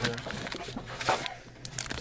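Foil trading-card packs crinkling and rustling as they are picked up and handled, with irregular small clicks and scrapes.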